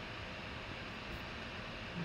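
Faint steady hiss of background room noise, with no distinct events.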